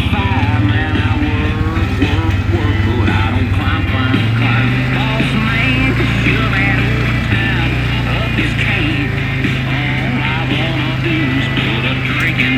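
ATV engine running steadily as it drives along a forest trail, a low drone under rock music with singing.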